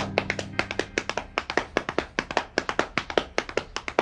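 Hands slapping against the legs in a quick galloping rhythm, several slaps a second, imitating a horse's hoofbeats. A steady held musical chord sounds underneath.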